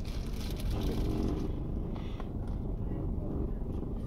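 Steady low rumble of a car engine idling, heard from inside the car's cabin.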